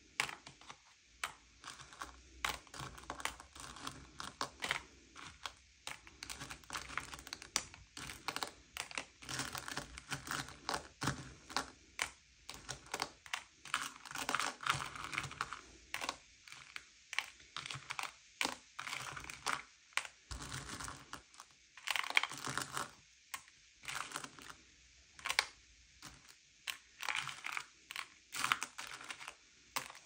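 Candy-coated M&M's chocolates clicking against one another and sliding over a molded paper plate as fingertips push and sort them: a steady run of small, irregular clicks.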